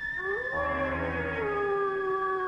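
Synthesizer music: a high held tone over a lower gliding tone that rises, then sinks slowly, in a howl-like way.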